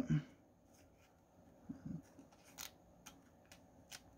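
Faint, scattered ticks and rustles of a trading card being slid into a plastic card sleeve.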